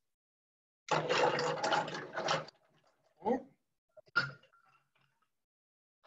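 Ice cubes clattering into a large cocktail glass for a mojito, a rattling burst of a second and a half, followed by two lighter clinks.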